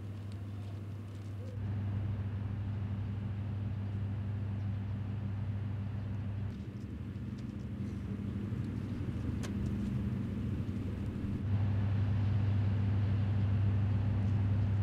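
A steady low engine hum. It steps up in loudness about a second and a half in, drops about six and a half seconds in, and rises again near the end.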